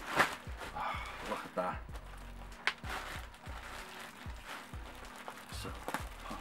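A plastic-bagged costume being pulled out and handled, with rustling and knocks. A sharp knock comes just after the start and another about two and a half seconds in. Background music and some wordless vocal sounds run underneath.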